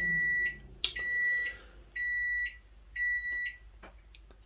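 Sharp microwave oven beeping to signal that its cooking cycle has ended: four short, high beeps about a second apart.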